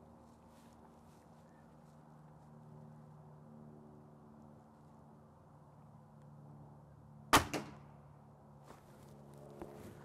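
A single shot from a .22 Gamo Magnum Gen 2 break-barrel air rifle firing an H&N 21-grain slug, a sharp crack about seven seconds in, followed about a quarter second later by a fainter knock as the slug strikes a particle-board target at 40 yards.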